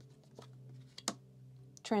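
Tarot cards being handled: two light card clicks, the sharper one about a second in, as a card is drawn off the deck and laid down. A faint steady low hum runs underneath.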